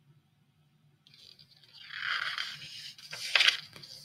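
Paper rustling as a picture book's page is handled and turned, swelling about halfway through, with a few sharper crinkles near the end.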